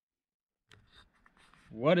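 Silence, broken by a few faint clicks, then a man's voice starts speaking near the end.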